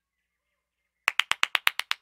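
After a second of silence, a rapid run of about a dozen sharp taps follows, close to ten a second.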